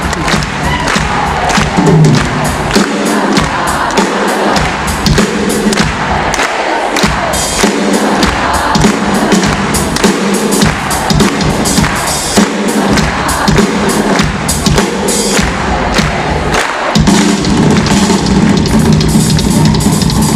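Live drum solo on a Yamaha rock drum kit: a dense run of bass drum, tom and cymbal hits, loud and steady throughout.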